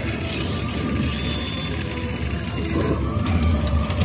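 Pachinko parlor din: loud machine music and sound effects over a dense, steady clatter of steel balls and mechanisms.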